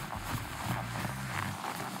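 Faint, soft hoofbeats of a ridden horse moving over dirt and grass.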